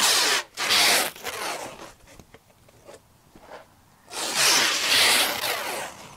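Plastic stretch wrap being pulled off its roll and drawn around a bundle of split firewood, making a rasping, zipper-like sound. There are two long pulls: one brief, and a longer one starting about four seconds in.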